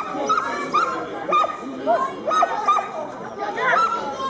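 A dog barking and yipping repeatedly, in short high calls several times a second, over background chatter of people.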